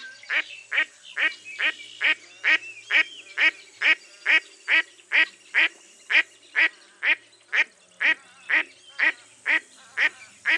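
Mottled duck quacking in a long, steady series, about two quacks a second, each quack short and falling slightly in pitch.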